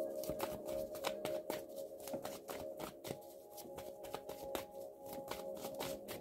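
A tarot deck being shuffled by hand: a rapid run of soft card flicks and clicks. Underneath is a steady held tone of background music.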